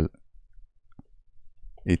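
A single faint keystroke on a computer keyboard about a second in, during a pause in typing code.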